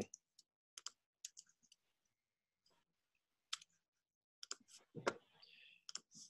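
Faint, scattered clicks from a computer mouse and keyboard: a few in the first second and a half, one at about three and a half seconds, and a cluster near the end, otherwise near silence.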